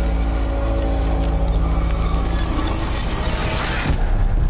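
Dark horror-trailer score: a steady deep drone under long held tones, swelling into a rising wash of noise that cuts off sharply at the end.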